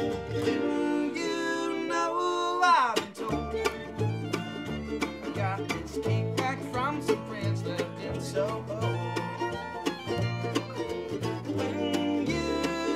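Acoustic string band playing an instrumental jazz-bluegrass passage on fiddle, mandolin, acoustic guitar and double bass. About three seconds in a note slides a long way down in pitch, and from then on the double bass plays a steady beat of low notes under the plucked strings.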